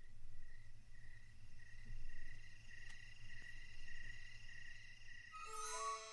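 Faint, evenly pulsing chirping like crickets over a low hum. A few descending musical notes come in near the end.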